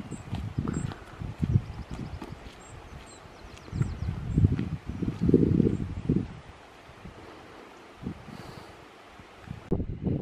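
Wind buffeting the microphone in uneven gusts, strongest about five seconds in and easing off after, with a few faint high bird chirps in the first few seconds.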